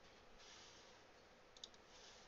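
Near silence: faint room tone, with a few faint computer mouse clicks near the end.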